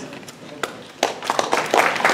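Audience applauding. A few scattered claps come first, then the clapping swells into steady applause about a second in.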